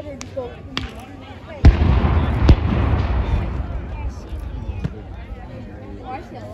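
Civil War field cannons firing blank charges: a loud boom about two seconds in and a second shot just under a second later, each followed by a low rumble that rolls away over a couple of seconds. A few fainter sharp cracks come before and after.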